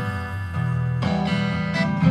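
Instrumental passage of a folk song with strummed acoustic guitar chords, freshly struck about a second in and again shortly before the end.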